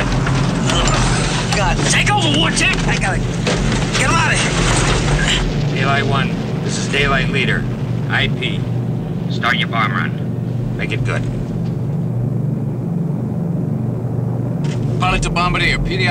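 Steady low engine drone, with indistinct voices over it for the first ten seconds or so and again near the end.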